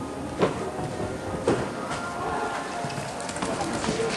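Indoor riding-hall background of murmuring voices and faint music, with two sharp knocks about a second apart early on, amid the muffled hoofbeats of a cantering horse.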